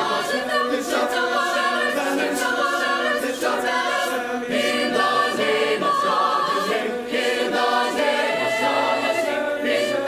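Mixed choir of men and women singing in harmony, sustained chords held and moving together, with no instrument heard.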